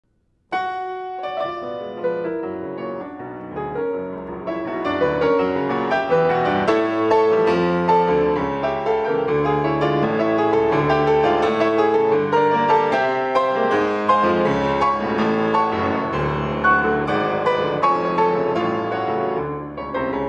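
Baldwin SD-10 concert grand piano being played: a continuous run of many notes in bass and treble together, starting about half a second in and growing fuller after a few seconds.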